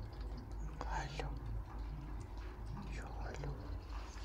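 Quiet whispered voice, with a few faint clicks over a low steady hum.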